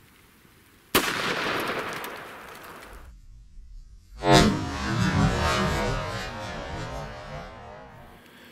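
A single .44 Magnum shot about a second in, a sharp crack echoing away over a couple of seconds. After a sudden cut, the shot comes again about four seconds in as a deeper, drawn-out boom that fades slowly: the report slowed down.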